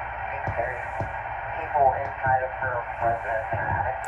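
Police radio dispatch from a Uniden HomePatrol-II scanner, replayed through a computer's speakers: a dispatcher's voice, thin and narrow, over steady radio hiss.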